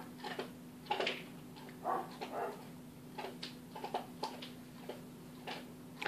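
Canaries giving short, scattered chirps, a dozen or so brief call notes spread over several seconds rather than a song, over a faint steady hum.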